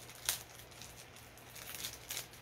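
Cassette tapes and their packaging being handled: one sharp plastic click about a third of a second in, then faint rustling and a few lighter clicks near the end.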